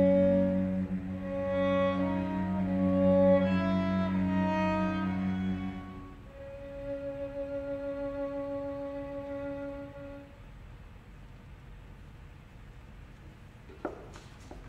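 A string ensemble of violin and cello plays slow closing bars. The cello holds a low note under a moving violin line, then one high string note is held alone with vibrato and dies away about ten seconds in, leaving the hall quiet.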